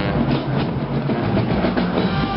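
Marching band playing outdoors: sousaphones and brass holding low notes over a steady drum beat.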